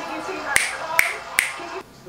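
Three sharp finger snaps, a little under half a second apart.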